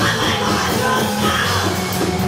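Live proto-punk band playing loud, continuous music with drums and synthesizer, heard from among the audience in a club.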